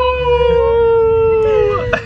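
A single long, high wailing call held for about two seconds, its pitch sinking slightly before it breaks off near the end.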